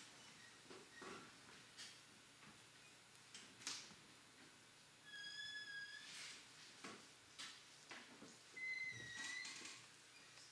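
Amplified experimental electronic sound from a live piezo piece: sparse scratches and clicks, with two short whistle-like tones about halfway through and again near the end, the second one dipping slightly in pitch.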